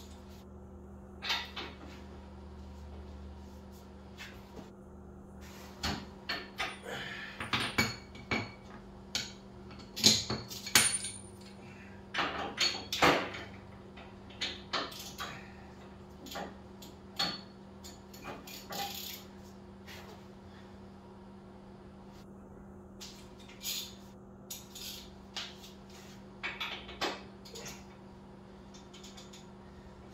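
Hand wrenches clinking and knocking on a motorcycle's rear axle nuts as they are worked loose: irregular metal clanks, busiest in the middle and loudest about ten seconds in, with a few more near the end.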